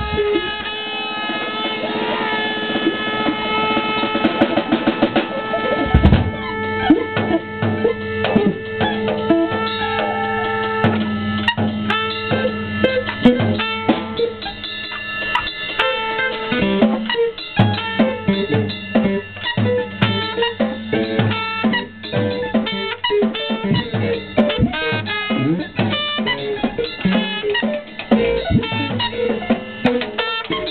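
Live free-improvised jazz by a trio of drum kit, electric guitar and trumpet. Held pitched notes ring for about the first six seconds, then dense, busy drumming takes over beneath sustained notes.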